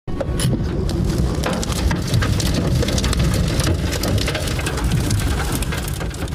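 Tornado winds and heavy rain beating on a car, heard from inside it: a constant deep rumble of wind with a dense patter of drops and small impacts.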